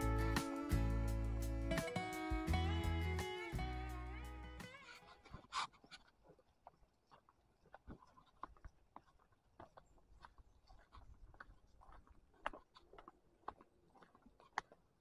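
Guitar background music fading out over about the first five seconds, then faint, irregular crunches and clicks of footsteps on a dirt path.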